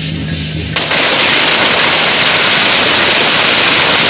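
A long string of firecrackers goes off in one rapid, unbroken crackle, starting about a second in and drowning out the procession music.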